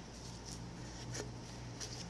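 Light handling noises: a few faint taps and rustles from working with craft materials by hand, over a steady low hum.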